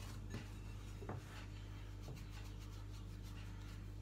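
Hands rubbing dry flour into pastry dough in a mixing bowl: faint rubbing with a few soft knocks, over a steady low hum.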